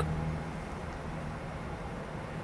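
Steady low hum of a running vehicle heard from inside its cab, with a faint even hiss over it.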